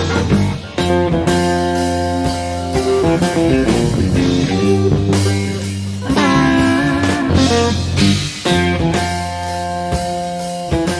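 Live rock band playing an instrumental blues passage, with electric guitar prominent.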